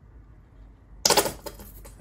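Bottle of gold acrylic paint squeezed out onto a canvas, sputtering and crackling in a burst that starts about a second in.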